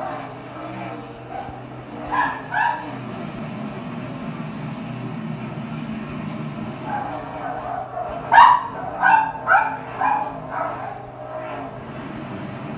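House dogs barking: two barks about two seconds in, then a quick run of about six barks from about eight seconds in. Under them runs the steady drone of stock-car engines from a televised race, heard through the TV's speakers.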